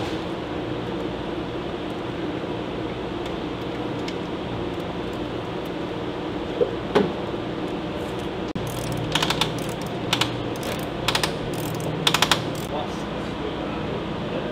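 Hand ratchet wrench clicking in four short runs during the second half, tightening the fixings of a missile launcher onto a helicopter's weapon mount, with a pair of knocks shortly before. A steady low hum sits underneath.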